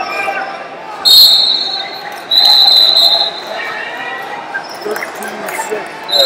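Referee's whistle blowing twice in a large hall, with a short shrill blast about a second in and a longer one of about a second soon after.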